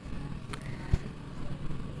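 Spatula stirring chicken korma in a cooking pot: a faint steady simmering hiss with a couple of light scrapes and knocks of the spatula.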